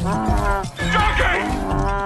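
A donkey braying, two calls, one at the start and one near the end, over background music with a low pulsing bass.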